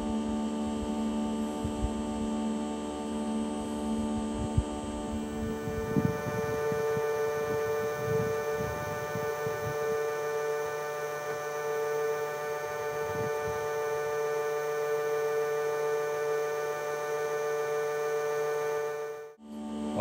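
Leaf blower running on low: a steady drone of several held tones. About five seconds in, its pitch jumps up about an octave where the footage is sped up, and it cuts out for a moment near the end.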